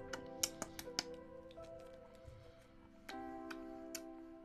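Quiet background music of held, sustained chords, with a new chord coming in about three seconds in. A few light, sharp clicks are scattered over it.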